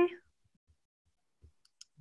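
A woman's spoken farewell trails off at the start, then near silence with a few faint, short clicks about one and a half seconds in.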